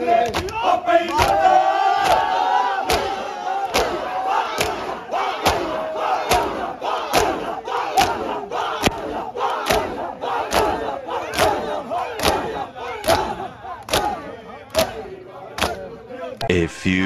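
A crowd of men doing Shia matam, slapping their chests together in a steady beat of just over one sharp slap a second. A crowd of men's voices calls out with it, loudest in the first few seconds.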